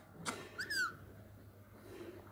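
Handling noise from a hand held close over the phone, a knock and a rustle, followed about half a second in by a short, high chirp-like squeak with a quick rise and fall in pitch.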